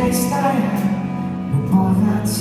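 Live worship band playing on stage: held guitar and keyboard chords, with a voice singing.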